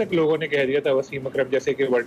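A man speaking continuously in a low-pitched voice.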